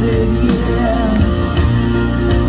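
A rock-style song with guitar and a singing voice, played loud through an RCX 15-inch active loudspeaker, with a strong steady bass.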